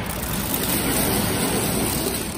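Automatic biscuit packing machine running, a steady, even mechanical noise from its conveyor and wrapping mechanism.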